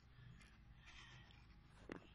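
Near silence: faint background hiss, with one faint click near the end.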